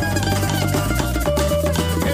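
A recorded song playing, with drums, bass and guitar.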